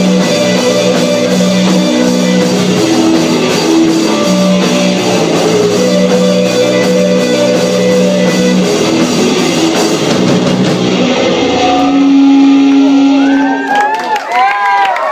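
Live rock band, two electric guitars and a drum kit, playing loudly, then closing on a held final chord that rings for about two seconds and stops just before the end.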